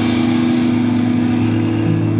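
A live ska-punk band's amplified instruments holding one steady, sustained low chord, a loud unbroken drone.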